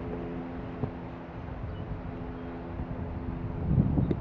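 A steady, distant engine hum that stops near the end, over wind noise on the microphone.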